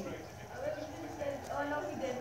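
A faint voice low in the background.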